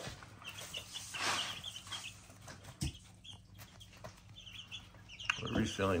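Young chicks, about two weeks old, peeping softly in short scattered chirps, with a brief rustle about a second in.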